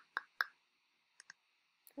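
Computer mouse clicking: two sharp clicks in the first half second, then two fainter clicks a little after a second in.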